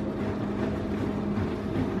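Small tabletop egg incubator running, its fan giving a steady hum with a constant low tone.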